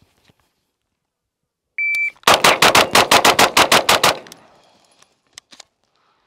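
A shot-timer beep, then a rapid string of about a dozen shots over roughly two seconds from a Grand Power Stribog SP9A3S 9 mm pistol. The shots die away in a fading echo.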